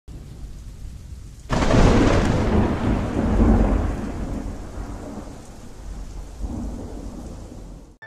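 Steady rain with a sudden loud thunderclap about a second and a half in that rumbles away over several seconds, then a second, weaker roll of thunder near the end before the sound cuts off suddenly.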